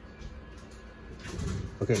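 Quiet room tone, then a man's low murmured voice building about a second in and leading into a spoken "okay" at the end.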